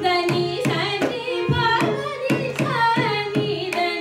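A Carnatic vocalist sings a phrase with gliding, ornamented pitch, shadowed by violin. A mridangam plays sharp strokes throughout.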